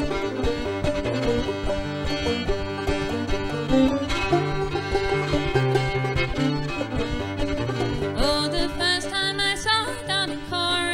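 Old-time string band instrumental break: five-string banjo and fiddle playing the melody over an acoustic guitar's bass runs and strumming. A higher wavering melody line comes in near the end.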